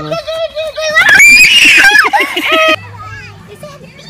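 A young child shouting, then shrieking loudly and high-pitched for about a second and a half before the sound cuts off suddenly.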